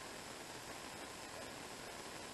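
Faint steady hiss of background noise, with no distinct event standing out.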